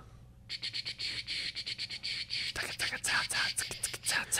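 Breathy, mostly voiceless laughter in quick irregular puffs and gasps, starting about half a second in: a man laughing so hard he almost does a spit take.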